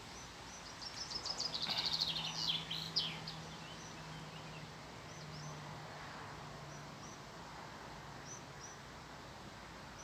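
A songbird singing: a quick run of high notes falling in pitch about a second in, then scattered short chirps. A faint steady low hum sits underneath through the middle.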